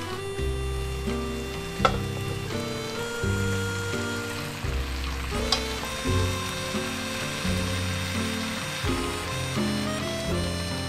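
Cabbage and shredded vegetables sizzling in a hot non-stick wok as they are stir-fried with chopsticks, with sharp clicks of the chopsticks against the pan about 2 and 5.5 seconds in.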